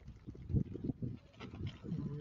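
Irregular low knocks and rustling as live crabs and sea snails are handled and shifted about in a basin.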